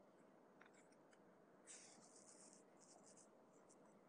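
Near silence: faint room tone with a few brief, faint scratching sounds, the longest about two seconds in.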